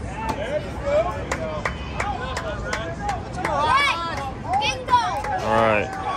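Children's voices calling and chattering close by, with a string of sharp taps or knocks during the first few seconds and a louder call near the end.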